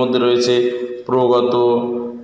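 A man's voice chanting in Sanskrit-style recitation: long, steadily held syllables at one pitch, with a brief break about a second in.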